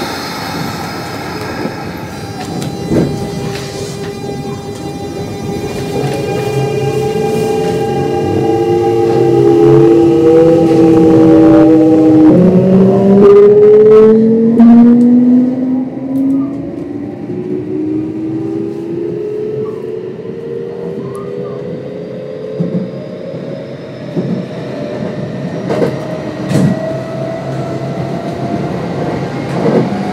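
Kintetsu 1026 series electric train running, its Hitachi GTO-VVVF inverter and traction motors whining under power over the rumble of the wheels on the rails. The whine changes pitch suddenly about twelve seconds in, then rises steadily, and is loudest midway.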